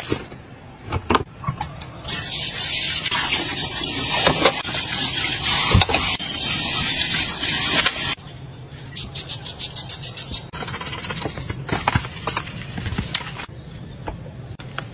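Water from a kitchen tap spraying into a stainless-steel sink for about six seconds, then cutting off. It comes between a few light knocks at the start and, after it stops, a quick run of scraping strokes, about five a second, and scattered clicks.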